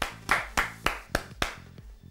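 Hand clapping: a run of about seven sharp claps, roughly three or four a second, getting quieter toward the end.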